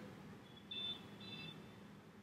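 Two faint, short high-pitched beeps about half a second apart, over quiet room tone.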